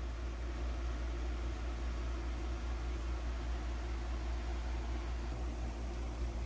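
Steady room background noise: a constant low hum under an even hiss, with no distinct events.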